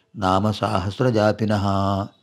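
A man reciting Sanskrit stotra verses in a chanting voice, in two steady phrases that stop at the end.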